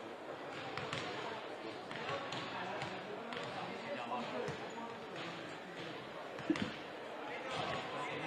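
Basketballs bouncing on the hardwood floor of a large sports hall as wheelchair basketball players warm up, irregular thuds over indistinct background voices, with one sharper, louder thud about six and a half seconds in.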